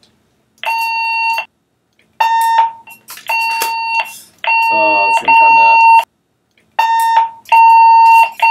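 Handheld fire-department portable radio sounding a string of steady beeps of uneven length, about seven in eight seconds: the tone on the ATAC 95 channel that signals a transmission is in progress.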